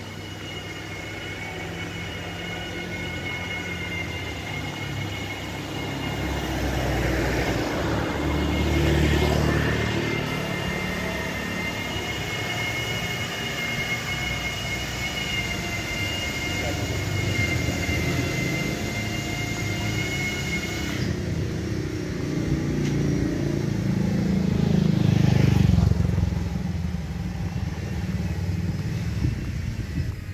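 Road traffic: motor vehicles pass one after another with a rising and fading rumble, one about eight to ten seconds in and the loudest about twenty-five seconds in. Under it runs a steady high whine that stops abruptly about twenty-one seconds in.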